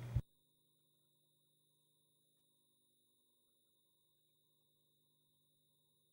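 Near silence. A voice cuts off abruptly at the very start, leaving only a very faint steady hum.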